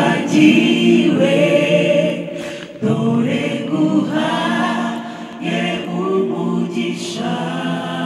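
Mixed choir of women's and men's voices singing a Kinyarwanda gospel song a cappella, in sustained chords broken into phrases by short pauses about every three seconds.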